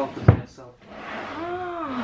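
A single sharp knock about a quarter of a second in, followed near the end by a drawn-out vocal sound from a person whose pitch rises and falls.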